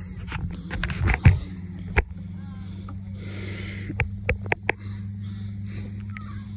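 A steady low mechanical hum, like an idling engine or generator, runs throughout. It is broken by a few sharp clicks, mostly between about four and five seconds in.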